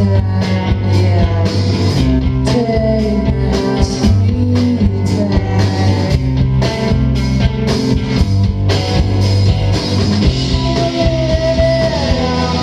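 A rock band playing live: electric guitar, bass guitar and a drum kit keeping a steady beat, heard from the audience.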